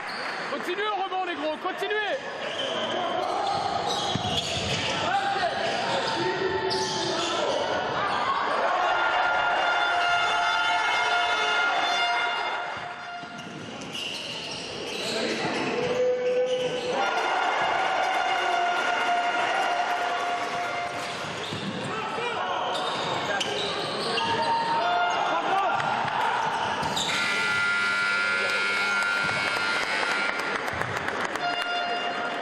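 Indoor football match in a reverberant sports hall: the ball bouncing and being kicked on the hard court floor, with players and spectators shouting throughout.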